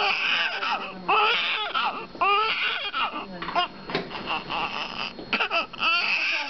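Newborn baby crying in about four wailing bursts with short breaths between, each cry rising and then falling in pitch.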